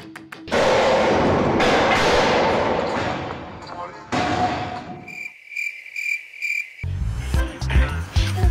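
Iron weight plates crash off a plate-loaded gym press machine onto the floor, a long noisy clatter that fades over about three seconds, with a second shorter crash just after. Then comes a chirping-cricket sound effect of about four chirps a second, lasting under two seconds.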